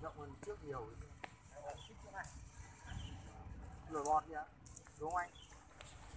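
Faint voices talking in snatches in the background, with a single sharp click about a second in.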